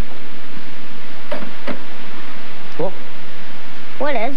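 Two light knocks from a small plastic terrarium's lid being handled, about a second and a half in, over a steady hiss. A brief murmur of a voice comes about two-thirds of the way through.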